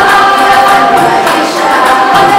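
A school choir of students singing a song together over backing music.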